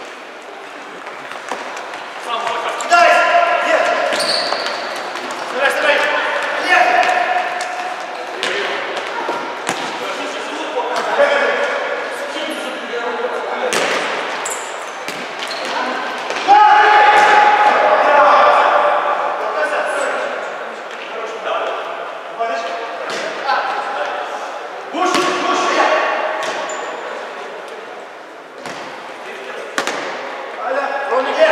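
Futsal players shouting to one another in a reverberant sports hall, the loudest shout just past halfway, with scattered kicks and bounces of the ball on the wooden court.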